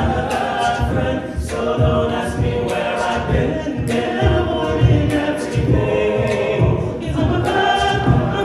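Men's a cappella ensemble singing a pop song in close harmony, a lead voice over sung backing chords, with a steady vocal-percussion beat of thumps and snare-like hits about twice a second.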